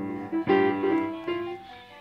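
Piano keys struck in uneven clusters by a toddler, about four strikes, each chord of notes ringing on and fading.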